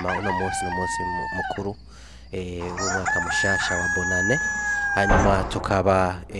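A man speaking into a handheld microphone through a PA, with steady high feedback tones ringing over his voice, the longest held for about two seconds in the middle.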